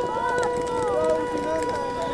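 Air raid siren holding one steady tone, with the voices and footsteps of people hurrying past.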